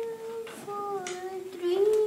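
A child singing long held notes, one voice with small slides in pitch between notes: a held note, a short break about half a second in, a gently falling note, then a rising slide into another long held note near the end.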